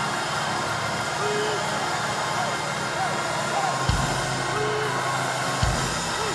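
Church congregation praising aloud, many voices shouting and crying out together over a band playing sustained low chords. A couple of drum hits land in the second half.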